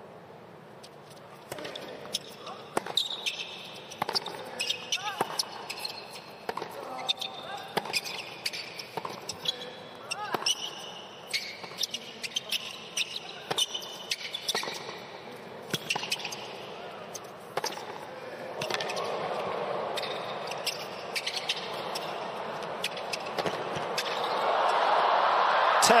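A hard-court tennis rally: the ball is struck by racquets over and over and bounces, with shoe squeaks on the court. Crowd noise swells over the last several seconds into loud cheering and applause as the point ends.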